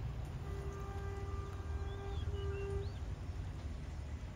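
Outdoor background with a steady low rumble, a faint held tone lasting about two seconds, and a few short bird chirps.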